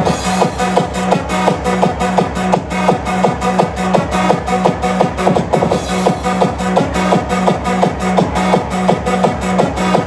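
Electronic dance music from a DJ set over a PA system, with a steady, fast, driving beat and a pulsing bass.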